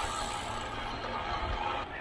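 Steady rolling noise of a bicycle on asphalt, with mechanical noise from its drivetrain.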